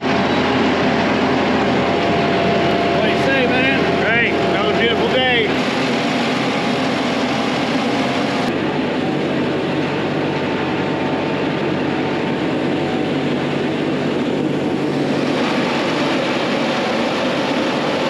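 Mahindra tractor's diesel engine running steadily under load from close by, pulling a dirt-loaded dump trailer uphill in soft ground. It is slightly louder in the first five seconds or so, then eases a little.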